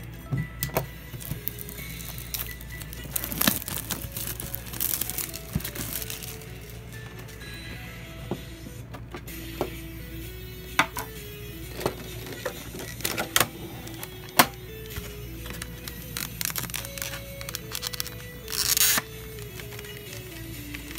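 Plastic shrink-wrap crinkling and tearing, with clicks and scrapes from a metal tin and its clear plastic insert being handled and opened, over soft background music with a simple melody. A louder burst of crinkling comes near the end.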